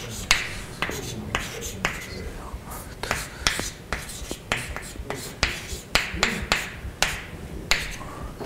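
Chalk on a blackboard while drawing: a quick, irregular series of sharp taps, each followed by a short scrape, about two or three a second.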